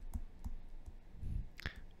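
A stylus tapping and scraping on a tablet screen during handwriting: a scatter of light, irregular clicks.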